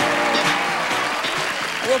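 Game show music cue of held, steady notes over studio audience applause, dying away near the end.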